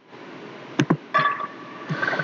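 Sound of a gym video playing back: a steady hiss of room noise, with a sharp knock a little under a second in and a short pitched sound in the middle.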